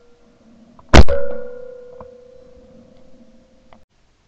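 A shotgun shot about a second in, the second shot of a double-trap pair, heard from a camera mounted on the gun's barrel. It is followed by a ringing tone that fades over about three seconds, and two faint clicks near the end.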